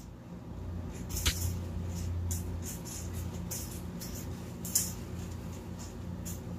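Short, scattered rustles and light scrapes of live plants and decor inside a glass terrarium as it is searched by hand, over a low steady hum.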